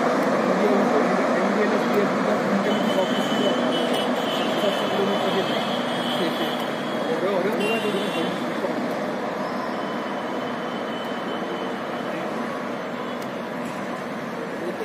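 Humsafar Express passenger train pulling away: the rumble of its coaches rolling on the track fades slowly as it recedes, with indistinct voices of people nearby.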